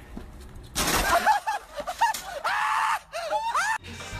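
A sudden crash as a man lands on a folding sidewalk sign, followed by onlookers yelling and shrieking with laughter for about three seconds.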